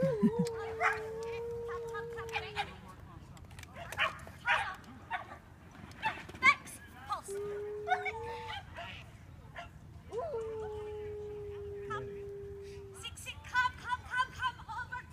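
A dog whining in three long, steady, high whines, with sharp yips and barks in between.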